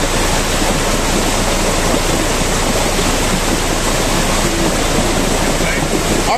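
Muddy floodwater rushing across a road in a loud, steady, unbroken wash of water noise.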